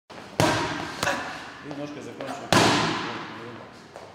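Boxing gloves smacking into padded focus mitts: three loud punches, the first two about half a second apart and the third about a second and a half later, each echoing in the hall.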